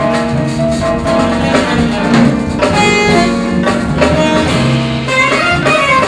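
Live jazz quartet playing: a saxophone plays a melody over piano and a low bass line, moving into quicker, higher notes near the end.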